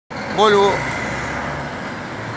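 Volvo semi-truck's diesel engine running steadily, with a short spoken sound about half a second in.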